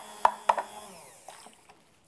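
bamix stick blender's universal motor running with a steady whine, with a few sharp knocks in the first half second. It is then switched off and spins down, fading out about a second and a half in.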